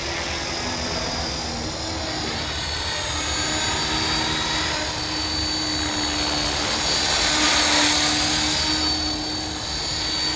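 Align T-Rex 450 electric RC helicopter in flight: a steady high whine from its motor and drive with the rushing of the spinning rotor blades. The sound swells louder about three-quarters of the way in as the helicopter comes nearer.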